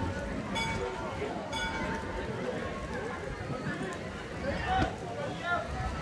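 Outdoor ambience of a busy walkway: wind rumbling on the microphone and people's voices in the background, with a short pitched beep repeating about once a second during the first two seconds.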